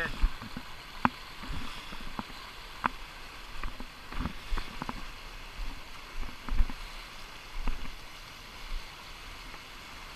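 Shallow river riffle rushing steadily, with about a dozen sharp, irregular knocks and clicks close to the microphone.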